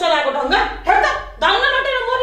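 A woman talking loudly in a raised, high-pitched voice, in short broken phrases.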